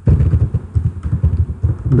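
Computer keyboard being typed on: a fast, irregular run of loud keystrokes.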